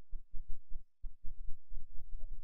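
Computer mouse scroll wheel turning in quick runs, heard as soft low thuds about six a second, with a brief pause about a second in.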